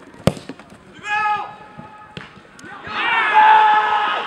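A football struck hard, one sharp thump about a quarter of a second in. A short shout follows, then from about three seconds in loud, sustained shouting from several players as the shot goes in for a goal.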